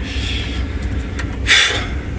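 A farm machine's engine running steadily, heard as a low rumble inside the cab while it travels down the road. About one and a half seconds in there is a short, loud hiss.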